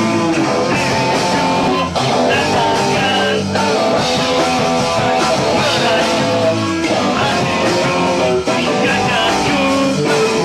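Grunge rock band playing live: electric guitar, bass guitar and drums, with a male singer's voice over them.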